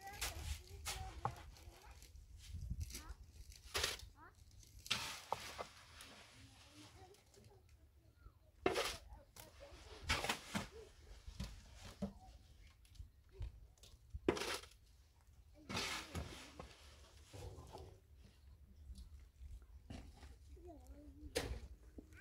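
Shovel and trowel working wet mortar: short, rough scrapes of metal on metal and on concrete block as mortar is scooped from a steel wheelbarrow and spread along the top of a block wall, coming every one to four seconds.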